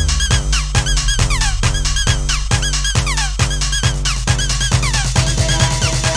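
A 1998 hard house vinyl record playing on a turntable. A steady four-on-the-floor kick drum runs under repeated short high notes that fall in pitch, and sustained tones come in about five seconds in.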